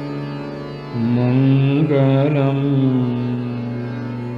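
Hindustani classical male voice singing slow vilambit raga Marwa. About a second in it enters on a long, low held note that wavers in pitch through the middle, then fades back into a steady drone.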